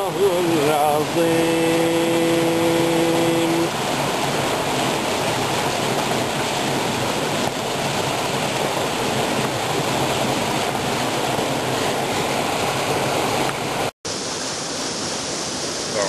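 Small waterfall splashing into a rocky stream pool, a steady rush of water. It opens under the end of a man's Quran recitation, a long held final note that stops about four seconds in. A cut brings a brief dropout about two seconds before the end, followed by the rush of another cascade.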